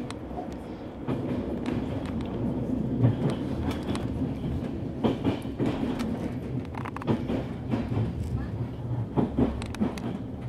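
A train running along the rails: a steady low rumble with irregular clicks and clacks of the wheels over the track.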